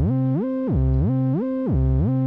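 Synthesizer bass arpeggio played by FL Studio's Channel Arpeggiator with slide on. The notes glide upward in steps instead of starting separately, then slide back down to the bottom note, and the pattern repeats about once a second.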